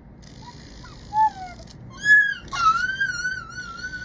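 High-pitched whimpering whines: a few short falling whines, then a long wavering whine held through the second half, sounding like a dead dog.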